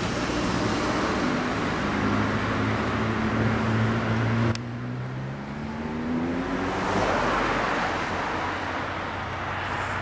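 Street traffic with vehicle engines pulling away, their pitch rising and falling. About halfway through the sound drops off abruptly, then another engine rises in pitch.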